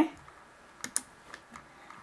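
Two quick clicks of a computer mouse button, a fraction of a second apart, about a second in, against quiet room tone.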